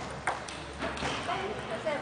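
Table tennis rally: the celluloid ball clicks sharply off bats and table, a few quick ticks roughly half a second apart.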